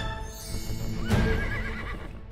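A horse whinny with a shaking, wavering pitch about a second in, over the fading tail of background music.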